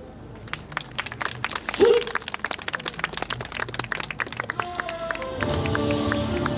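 Audience applause, many irregular claps, with one short shout about two seconds in. Loud dance music with a heavy bass starts over the loudspeakers near the end.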